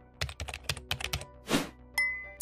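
Computer keyboard typing sound effect: a quick run of about eight key clicks, then a short whoosh near the end, over faint background music.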